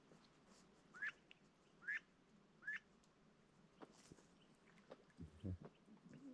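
Three short, rising whistled chirps from a bird, about a second apart, against near silence. A few soft low knocks follow near the end.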